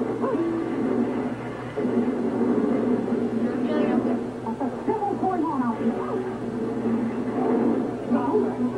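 A television playing in the room: indistinct voices over held music tones, with a few high, whining cries about five seconds in.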